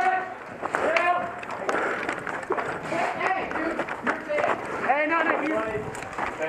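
Indistinct shouting and calling from several people, voices overlapping throughout.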